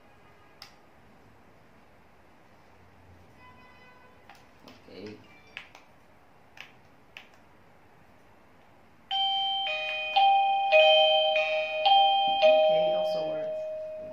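Wireless doorbell chime playing an electronic multi-note melody. It starts suddenly about nine seconds in and rings out near the end. Before it come a few light clicks and short faint beeps from handling and pressing the units.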